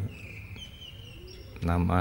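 A bird calling in the background: thin, high whistled notes that glide slightly over about a second and stop about halfway through.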